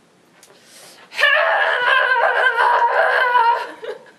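A young person bursting into loud laughter about a second in, lasting about two and a half seconds before dying away: breaking character and spoiling the take.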